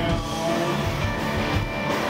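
Live rock band playing an instrumental stretch: electric guitars over bass and a steady drum beat.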